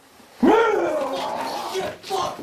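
A man's sudden loud yell, starting about half a second in, rising then falling in pitch and held for about a second and a half.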